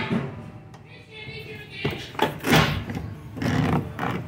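A few knocks and clunks as things are moved about and picked up in a pickup truck bed, with faint voices in the background.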